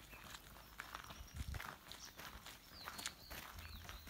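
Faint footsteps of people walking on a gravel and dirt track, one step after another at an easy pace.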